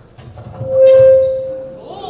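Public-address microphone feedback: one loud, steady, single-pitched squeal that swells up about half a second in, holds for about a second, then fades away.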